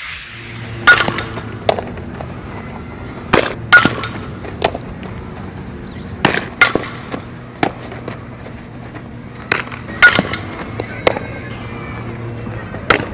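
Softball fielding drill: about a dozen sharp pops of a softball smacking into leather gloves, often in pairs less than a second apart, over a steady low hum.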